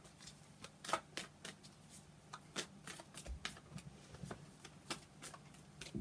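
Tarot cards being shuffled by hand, a quick, irregular run of soft card snaps and slides, several a second.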